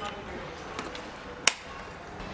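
A wall electrical switch clicks off once, sharply, about one and a half seconds in, cutting the power to a plugged-in charger.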